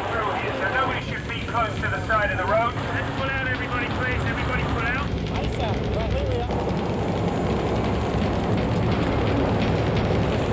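Voices calling out over truck engines and rushing noise. About six seconds in, a steady, dense rush of blown wind and spray takes over, like heavy rain, as the truck rigs blast ice and debris across the road.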